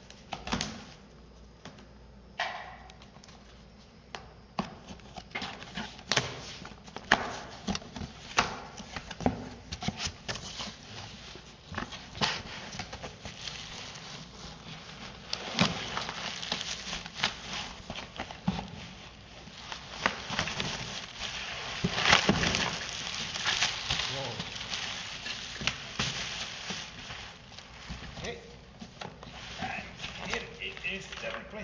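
A cardboard box being opened and unpacked: flaps pulled open and plastic wrapping rustling and crinkling, with many sharp crackles, busiest in the second half.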